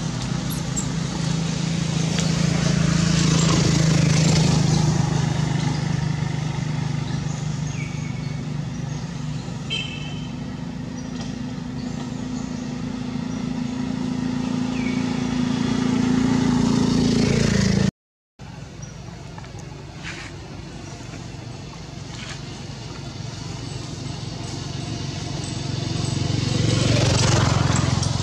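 Motor traffic going past: a steady engine hum that swells and fades as vehicles approach and pass. The sound cuts out for a moment about two-thirds of the way through.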